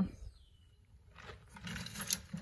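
Faint rustling and light clicks of insulated scrap wire being handled and picked out of a plastic bucket, starting about a second in.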